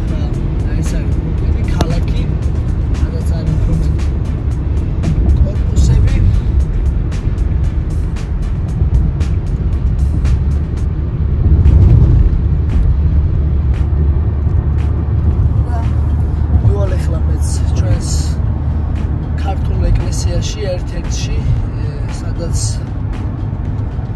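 Steady low road and engine rumble inside a car's cabin while driving at highway speed, with music and a voice playing over it.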